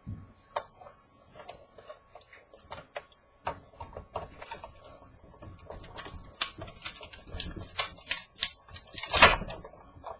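Hand-cranked manual die-cutting machine rolling a plate sandwich with soda-can aluminium and a metal snowflake die through its rollers, the die cutting the thin aluminium. It makes a run of irregular clicks and crackles that grow denser and louder over the last few seconds, loudest just before the end.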